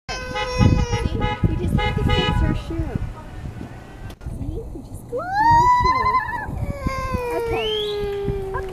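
Children's voices: a high sound held on one pitch in the first few seconds, then a girl's long loud call that rises and then slides slowly down in pitch over about three seconds.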